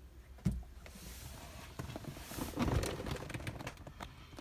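Handling noise in a small aircraft cockpit: a knock about half a second in, then rustling with small clicks and creaks that builds toward the middle and fades.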